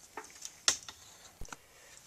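A few light clicks and a soft knock from handling crimped wires and ring terminals at a workbench, the sharpest click coming a little under a second in.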